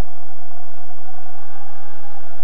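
Stadium crowd noise from a football match: a steady wash of many voices from the stands.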